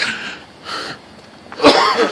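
A man's voice making breathy huffs, then a loud, rough burst from the throat near the end.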